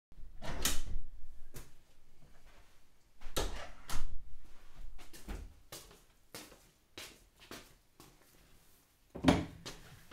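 Scattered knocks and thumps as people move about a kitchen, with quieter clicks between them. The loudest come about half a second in, around three and a half to four seconds in, and just after nine seconds.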